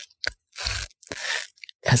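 Three short bursts of rustling, crunching noise close to a microphone, between stretches of talk, with a word of speech at the very end.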